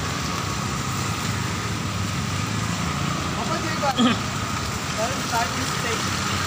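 Steady city road traffic on a wet street: a constant hum of car and autorickshaw engines with tyre noise, and brief voices about four seconds in.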